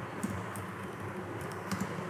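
Computer keyboard being typed on: about five separate keystrokes, three of them close together near the end, over a steady background hiss.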